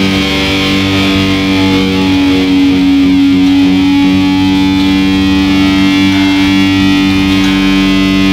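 Distorted electric guitar playing a melodic thrash metal riff, with a long note held and ringing from about two seconds in.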